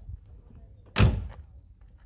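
A single slam of a 1959 Chevrolet Impala convertible's door being pushed shut, about a second in.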